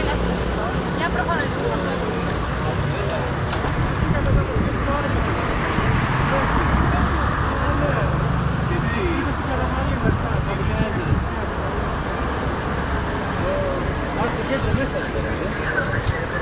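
Street noise from among a group of cyclists riding at night: traffic running alongside and people's voices calling and chatting over a steady rush of road and wind noise.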